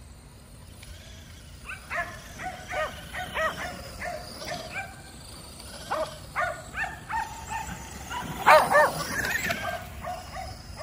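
Kerry Blue Terriers barking in a run of short barks, starting about two seconds in, with the loudest burst of barks near the end.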